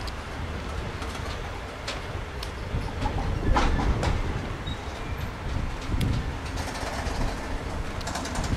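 Freight train of open box wagons rolling slowly past: a steady low rumble with scattered sharp wheel clicks, and a louder clatter about three and a half seconds in.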